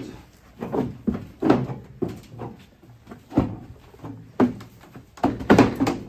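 Irregular knocks and thumps, about eight of them, as a Jersey cow steps out of a wooden milking stand: her hooves clomping on the stand's floor and the timber frame knocking as she is led out.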